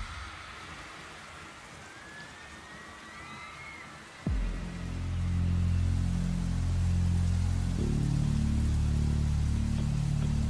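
Rain sound from a concert's playback: a steady hiss, with a faint rising and falling tone partway through. About four seconds in, low sustained music chords come in suddenly over it and shift to new notes near the end.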